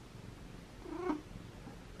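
Siamese cat making one short, quiet meow about a second in.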